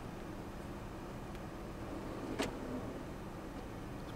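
A metal storage drawer on ball-bearing slides is pushed shut and latches with one sharp click about two and a half seconds in, over a steady low hum.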